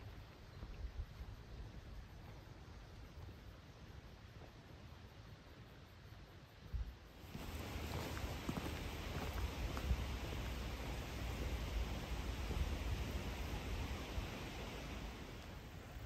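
Faint outdoor ambience, a soft steady hiss. About seven seconds in it becomes louder and fuller, with light footsteps on a gravel trail.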